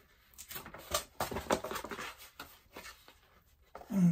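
Cardboard Gemini Mailer comic mailer being turned over and unfolded by hand: stiff flaps rubbing, creasing and tapping in a quick run of short scrapes and rustles that stops about three seconds in.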